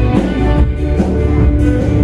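Live band music, an instrumental stretch with strummed guitar and drums keeping a steady beat.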